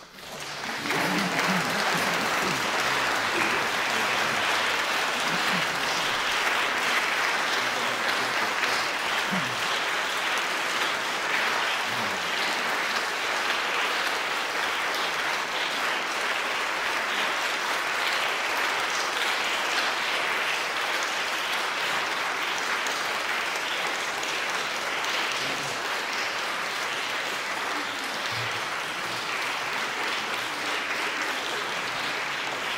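Audience applauding: the clapping breaks out suddenly, reaches full strength within about a second and keeps up steadily.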